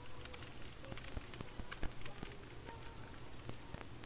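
Typing on a computer keyboard: irregular, quick key clicks, with a low steady hum underneath.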